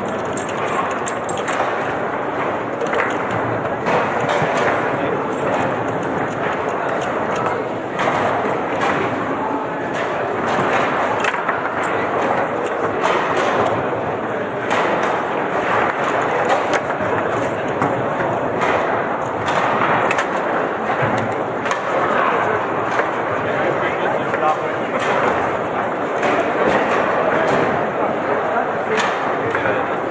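Table football being played on a Lehmacher table: irregular sharp clacks of the ball and figures being struck, over a steady hubbub of voices.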